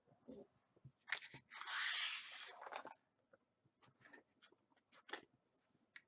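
Plastic counting tokens and a laminated exercise card being handled on a wooden table: a few light clicks, a scraping rush about two seconds in that is the loudest part, then scattered soft clicks.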